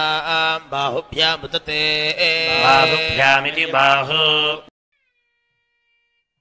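A man's voice chanting mantras over a steady low drone, cutting off abruptly about four and a half seconds in.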